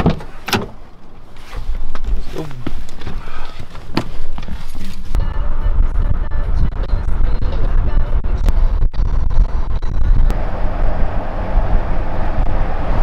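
A vehicle door handle clicks as the door is opened, then the car's engine and road noise run as a steady low rumble while driving, with background music mixed in.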